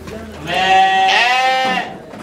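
A sheep bleating once: a single loud call lasting over a second, its pitch stepping up partway through.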